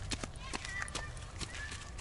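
Footsteps on a dirt path, a series of soft irregular steps.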